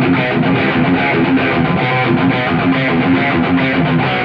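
Electric guitar played through an amplifier, a fast riff of rapid repeated picked notes over a steady low note.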